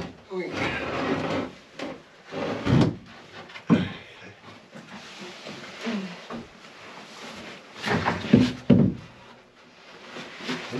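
A large plywood bulkhead panel being shifted by hand, scraping and rubbing against the hull and woodwork, with several knocks of wood on wood. The heaviest knocks come near the end.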